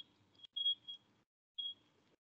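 Faint high-pitched electronic whine, one steady tone over a light room hiss, heard in short snatches that cut off abruptly into dead silence several times.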